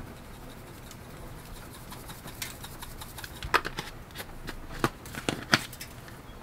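Spice jars being handled over a foil packet of food: a jar shaken out, then a few light clicks and taps of jars and their caps, mostly in the second half.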